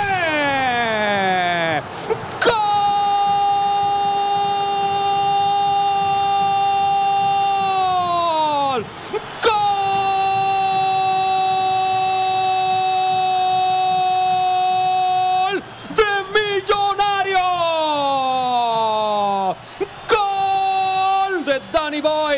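A football commentator's drawn-out shouted goal call, 'gol' held on one high note. It comes as two long holds of about six seconds each, each falling in pitch as the breath runs out, with quick gasps between and shorter falling cries near the end. It hails a goal scored the moment before.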